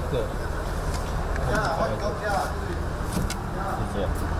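Truck engine idling steadily with a low, even hum, with a few light clicks of handling over it.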